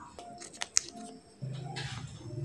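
Food prep on a bamboo cutting board: a few sharp taps and clicks in the first second, one much louder than the rest, then near the end a knife scraping through a slice of cheese onto the board. A low steady hum comes in partway through.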